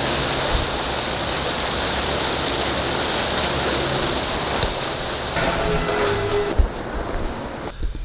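Steady rushing noise of water and wind from a moving boat, with music playing faintly underneath.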